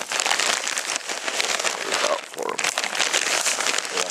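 Hamster food being scattered by hand onto dry gravel and brush: a continuous crackling rustle of pellets and the food bag, dipping briefly about two seconds in.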